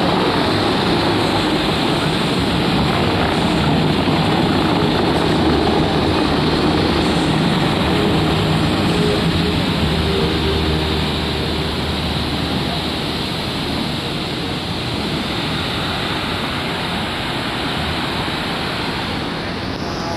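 Fountains of Bellagio water jets spraying and falling back into the lake: a steady rush of water that eases a little in the second half as the jets die down.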